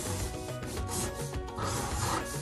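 Felt-tip marker rubbing on paper in short strokes as letters are written by hand, over soft background music.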